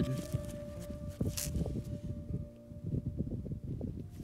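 Scuffing and knocking of a gloved hand picking up and turning a rock in loose dirt, with one sharper scrape about a second and a half in. Faint background music with a held note plays underneath.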